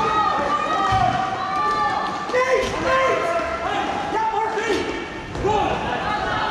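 Several voices shouting and calling over one another during hockey play, with sharp knocks of sticks and puck striking scattered through.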